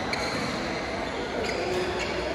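Indoor badminton hall: rackets striking shuttlecocks now and then, with a couple of sharp hits, and short high squeaks from court shoes over a steady babble of players' voices.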